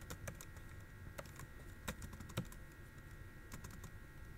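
Computer keyboard typing: faint, irregular keystrokes, with a couple of louder taps about two seconds in.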